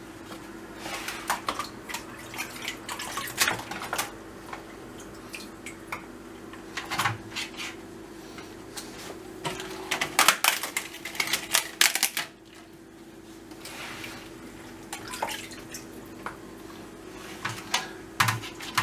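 Scattered crackles and clicks of hands handling sheets of dry yufka flatbread: pieces broken off the brittle sheet and, dipped in water, laid and pressed into a metal baking tray. A steady low hum runs underneath.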